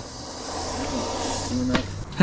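Steady hiss of compressed air leaking from inside a pneumatic tool. The user puts the leak down to the cold, which he thinks has shrunk a seal.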